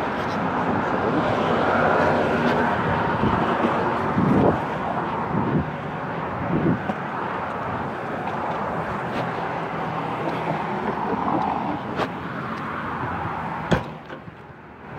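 Street traffic: a car's engine and tyres going by close at hand. Near the end there are two sharp knocks from the phone being handled.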